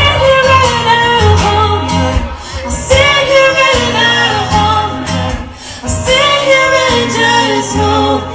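Live pop song played loud in a club: a woman sings the lead over guitar, with a pulsing low end beneath.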